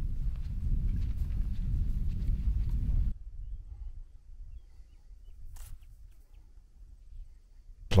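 Wind rumbling on the microphone with faint crackles, cutting off abruptly about three seconds in. A much quieter stretch follows, with one brief whoosh past the middle.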